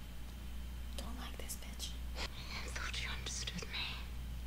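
Soft whispered speech: a few short, breathy, hissing syllables over a steady low hum.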